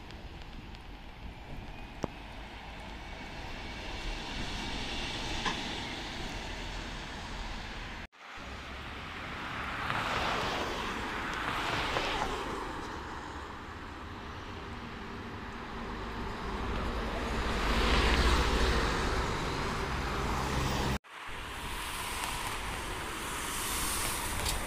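City street traffic in three short clips cut together: a city bus running at a junction, then road vehicles passing close by with two swells of engine and tyre noise, then a tram coming in on its tracks near the end.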